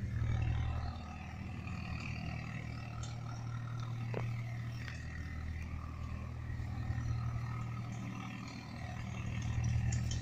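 A steady low mechanical hum, like a motor running, holding the same pitch throughout.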